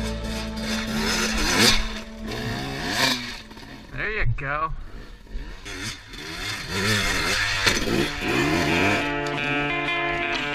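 Dirt bike engines revving up and down in repeated rises and falls as riders climb a rocky trail. Background music comes in again near the end.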